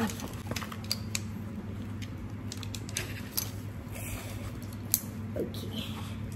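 Scattered small clicks and taps of a metal tripod stand's legs and plastic clamps being handled and adjusted, over a steady low hum.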